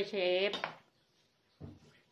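A short spoken phrase, then a single brief knock of a large metal mixing bowl being bumped, about a second and a half in.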